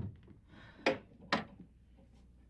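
Two sharp wooden knocks, about half a second apart, at a coat closet as a coat is taken out, with a faint rustle just before them.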